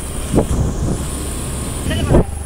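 Motor scooter riding along an uneven road, a steady low rumble of engine and road noise.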